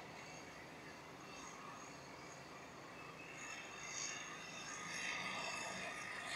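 Faint handling noise over a steady hiss: from about halfway, soft rustling and light scraping as fingers work a servo lead's connector onto the pin header of a flight controller board.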